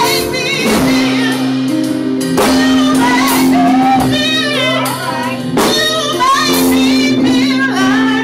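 A soul song: a singer's voice with wide vibrato on long, sliding notes over steady held keyboard chords, with a few sharp drum hits.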